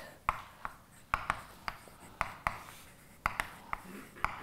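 Chalk writing on a blackboard: an irregular series of sharp taps, about a dozen, as each stroke lands, with faint scratching between them.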